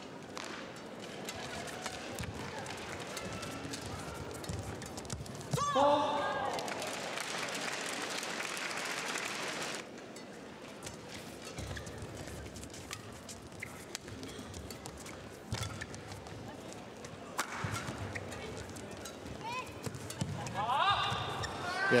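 Badminton match play in an arena: scattered racket hits on the shuttlecock and footfalls on the court. About six seconds in there is a short shout, followed by a few seconds of crowd noise.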